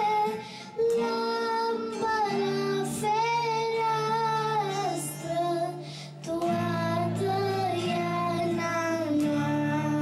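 A young girl singing a slow melody with long held notes, accompanied by a man playing an acoustic guitar. She pauses briefly between phrases, about half a second in and again around six seconds.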